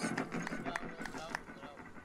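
Voices over music, fading out steadily, with scattered short clicks.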